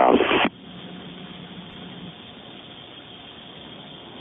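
A radio voice transmission on an air traffic control recording ends about half a second in, leaving a steady, even radio hiss.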